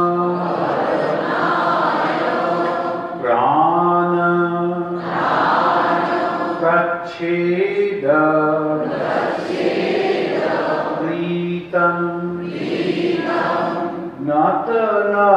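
A man chanting a Sanskrit hymn (stotra) in long melodic phrases, each ending on a held steady note, with brief pauses for breath between phrases.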